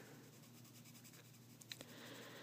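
Faint pencil scratching on paper as graphite shading is laid on, with a few small ticks late on.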